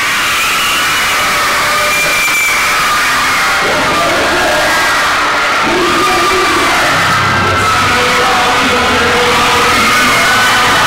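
A large crowd cheering and screaming, with many high voices, over music. A low bass comes in about seven seconds in.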